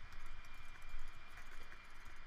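Computer keyboard keys and mouse buttons clicking faintly at an irregular pace, over a steady thin high tone in the background.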